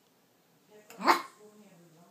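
Yorkshire terrier puppy giving a single short, sharp bark about a second in.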